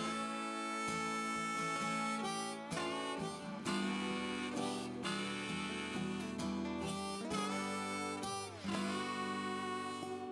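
Harmonica solo in a rootsy country song, played from a neck rack over two acoustic guitars strumming. Near the end the harmonica notes bend down in pitch.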